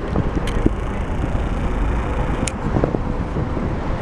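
Steady low rumble of a moving open-top tour bus, with wind buffeting the microphone.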